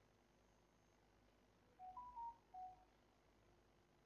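A faint, short electronic beep tune of four single-pitched tones stepping up then down, about two seconds in. It plays over near-silent room tone.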